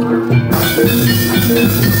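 Javanese gamelan-style music for a barongan dance: repeating metallophone notes in a steady pattern over drums, with a loud noisy wash coming in about half a second in.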